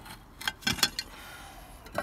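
Clay roof tiles clinking and knocking against one another and the battens as a row is slid sideways: a handful of short, sharp clicks.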